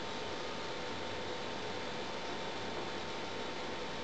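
Steady hiss with a faint steady hum tone, unchanging throughout: the background noise of the recording, with no distinct event.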